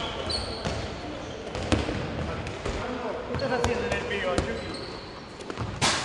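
Handballs thudding on a wooden gym floor and against the goal, a sharp knock about once a second, echoing in a large hall with distant players' voices.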